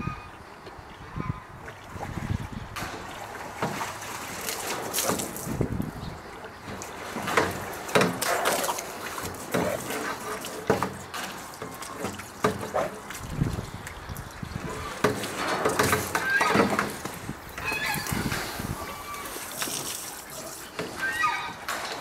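Water sloshing and splashing in a metal tub as a brown bear moves about in it and handles a garden hose, in irregular bursts.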